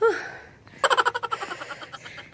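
A tired, out-of-breath woman's loud exhaled "whew" after hard exercise, falling in pitch. About a second in comes a short, fast run of high-pitched pulses that fades out.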